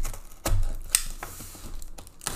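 Hands handling a taped cardboard case, rubbing and scraping over the cardboard with a few sharp knocks, the loudest about half a second in.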